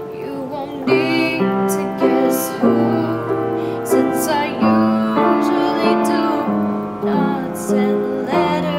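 Upright piano playing chords, struck about twice a second, with a woman singing over it.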